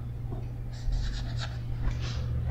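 A pen drawing on a diagram, a run of quick scratchy strokes about a second in and another near the end, over a steady low hum.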